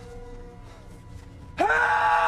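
A man shouting "Help!" in a long, loud yell that starts suddenly about one and a half seconds in, its pitch rising and then falling. Before it there is only low, steady background sound.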